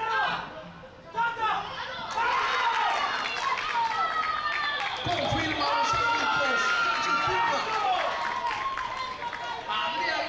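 Several high voices shouting and cheering at once, starting about a second in and keeping up to the end, as players and onlookers yell during a flag football play.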